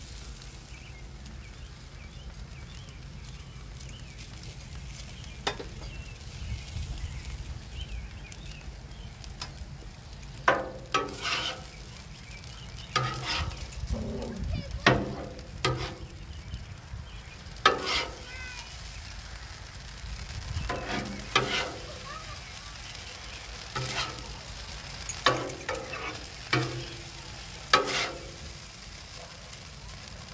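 Food sizzling on a Blackstone steel flat-top griddle over a steady low rumble. From about a third of the way in, a metal spatula scrapes and clacks on the griddle plate again and again, in short sharp strokes.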